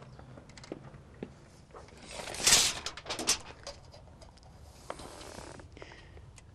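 Steel tape measure being handled and its blade run out against the door frame: quiet scattered clicks, a brief louder rasping scrape about two and a half seconds in, then a few sharp ticks.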